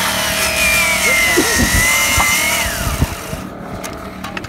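Corded circular saw cutting through a wooden fence rail, its motor whine sagging under load. Near three seconds in the saw is released and its whine falls away as the motor winds down.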